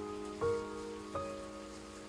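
Slow, soft piano music: two notes struck about half a second and just over a second in, ringing and fading away, over a steady rain-like hiss.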